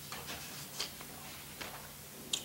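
Papers being handled at a table picked up by table microphones: a few soft, irregular ticks and rustles over a steady low room hum.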